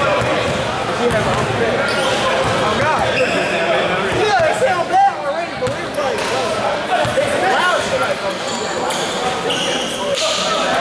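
Basketball bouncing on a hardwood gym floor, in a large echoing gym full of the voices of players and onlookers.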